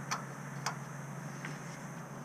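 A few faint, light metallic clicks, about three in two seconds, from a large ring washer being handled and fitted onto a boat trailer's new axle spindle.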